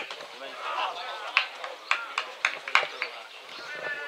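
A few spectators clapping, about six sharp, uneven claps between one and three seconds in, over murmured crowd voices.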